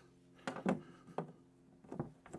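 A few faint metallic clicks: a small bunch of metal cabinet keys handled and a key fitted into the lock of an outdoor meter-cabinet door.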